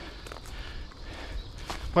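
Wind rumbling on a handheld phone's microphone outdoors, with a couple of faint taps.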